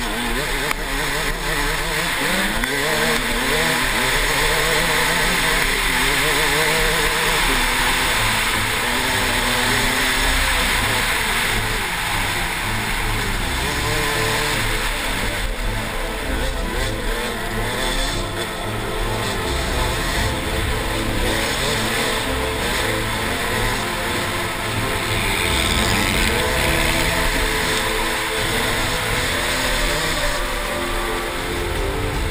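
A KTM 200 XC-W's two-stroke single-cylinder engine, revving up and down in pitch as the dirt bike races over rough desert track, with wind rushing over the helmet-mounted microphone.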